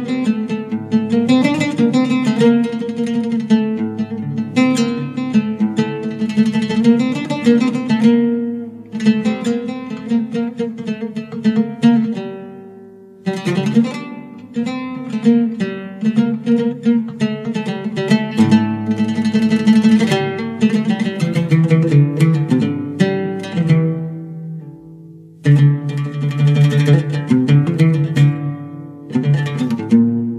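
Persian classical music played on a string instrument, quick runs of struck or plucked notes that ring on. The phrases die away briefly about nine, twelve and twenty-five seconds in before each new phrase starts.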